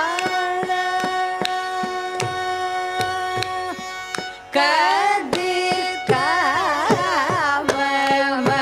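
Carnatic vocal singing with mridangam accompaniment. The singer holds one long steady note for about four seconds, then breaks into quick ornamented phrases with wavering pitch, while the mridangam strikes a steady rhythm underneath.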